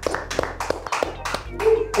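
Two people applauding with quick hand claps that die away after about a second and a half.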